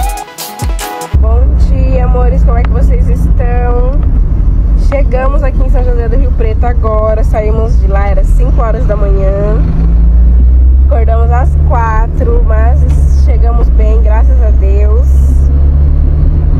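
Electronic music with a drum beat cuts off about a second in. A steady low rumble from a moving car, heard inside the cabin, follows under a woman's voice.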